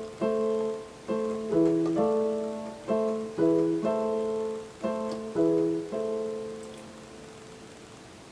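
Yamaha digital keyboard on a piano voice playing a slow chord progression, D minor, A minor and E major, at half speed, a new chord struck every half second to a second. The last chord rings out and fades after about six seconds.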